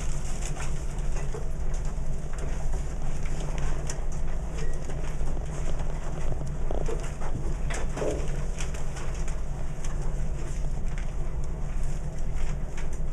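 Steady low hum of a quiet classroom's room tone, with faint scattered clicks and rustles.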